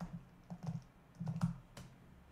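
Computer keyboard being typed on: a short, irregular run of keystrokes spelling out a one-word command, loudest about a second and a half in.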